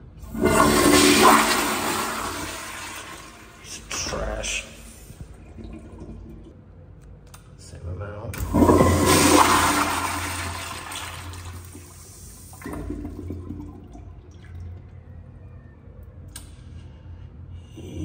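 Public-restroom toilet flushed twice, about eight seconds apart. Each flush starts with a sudden loud rush of water and drains away over about four seconds. The flushes leave shredded toilet paper in the bowl, a poor flush.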